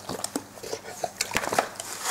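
Scattered soft clicks and rustles of a large dog being handled and shifting from lying to sitting.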